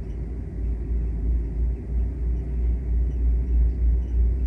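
Steady low rumble of room background noise in a pause between speech, with no other distinct sound.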